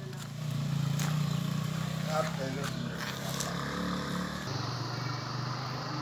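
A small engine running steadily at low revs, a constant low hum, with faint voices in the background.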